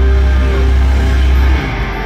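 Loud live metal music from a band on a concert PA, with a heavy, booming low end that drops away about one and a half seconds in.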